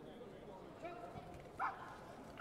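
A short, sharp kihap shout from a taekwondo fighter about one and a half seconds in, over a low murmur of voices.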